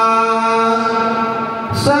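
A man singing a devotional line in Telugu into a microphone, holding one long steady note. Near the end it breaks off with a short hiss and he starts the next phrase on a new pitch.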